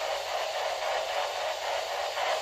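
A steady hiss of static with a faint rapid flutter running through it.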